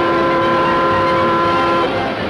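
Cartoon steam locomotive whistle blowing one long steady chord that cuts off shortly before the end, over the steady noise of the running train.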